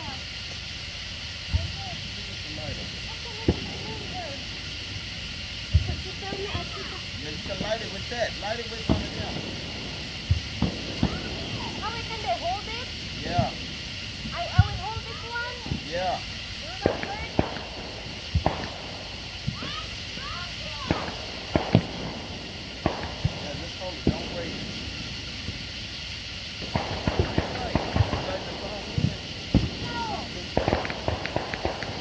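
Sparklers stuck in the grass burning with a steady hiss, over scattered sharp pops and crackles that grow dense near the end. Voices in the background.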